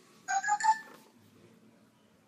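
A short electronic chime: three quick notes stepping up in pitch, lasting about half a second.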